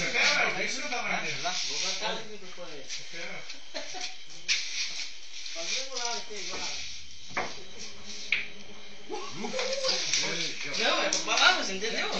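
Men's voices talking in the background, with two sharp clicks of pool balls a little past the middle as a shot is played on the sinuca table.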